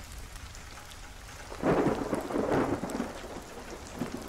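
Steady rain ambience with a rumble of thunder that swells up about a second and a half in, then fades back into the rain.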